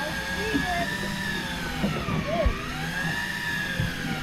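Electric deep-drop fishing reel motor whining steadily as it winds line up, its pitch sagging about halfway through and climbing back, with a heavy fish on the line. A short thump about two and a half seconds in.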